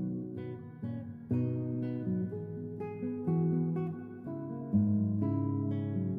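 Background music of plucked strings, each chord struck sharply and left to ring, a new chord about every second.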